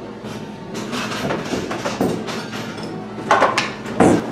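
Coffee-shop room noise with a few short knocks and clatters, the loudest about three and a half seconds in.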